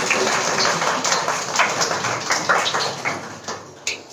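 A room full of acoustic guitars being tapped together, many small taps merging into a dense, rain-like pattering that stops suddenly near the end.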